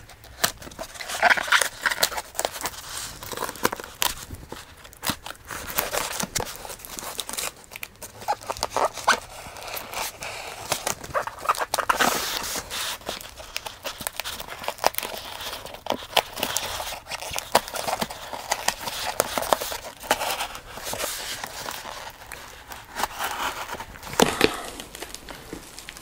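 A large knife cutting through the packing tape and cardboard of a parcel, in a run of irregular scrapes and clicks.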